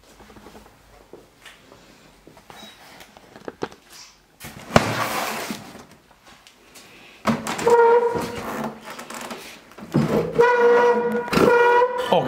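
Furniture being shoved aside through clutter. A sharp knock about five seconds in is followed by a short scraping rattle. Then a loud, steady squeal of scraping comes in two long stretches.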